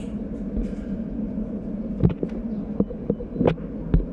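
A steady low hum with a few short clicks and knocks scattered through the second half, typical of a handheld camera being moved around.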